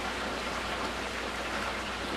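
Chicken wings deep-frying in hot oil in an electric deep fryer: a steady crackling sizzle.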